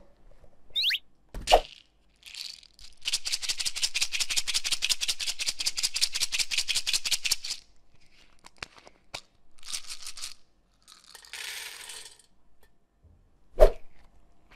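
Hands squeezing and handling rubber stress balls over a metal muffin tin: a short falling squeak and a thump, then an even rattle of about eight clicks a second for about four and a half seconds, followed by scattered clicks, brief rustles and another thump near the end.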